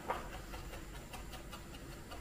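Kitchen knife chopping fresh dill on a wooden cutting board, a quick run of light taps several times a second as the blade strikes the board.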